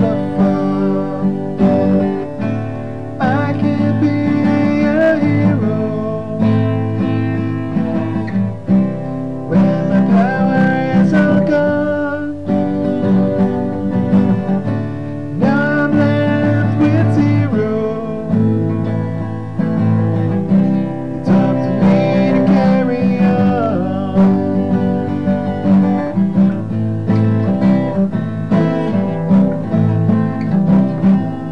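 Acoustic guitar strummed steadily with a man singing over it, picked up by a laptop's built-in microphone.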